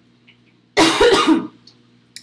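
A woman coughing into her fist: a short, harsh burst of a few quick coughs about a second in, lasting under a second.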